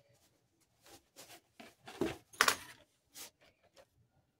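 A run of short scuffs and scrapes, loudest near the middle.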